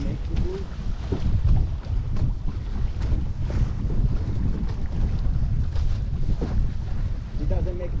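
Wind buffeting the microphone over the steady rush and splash of water along the hull of a small sailboat under way.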